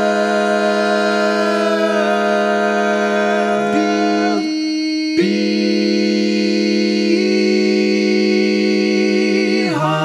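Four-part barbershop a cappella harmony, all parts sung by one male singer multitracked, holding sustained chords without words. Near the middle the chord breaks off briefly and a new one is held until near the end, where it shifts again.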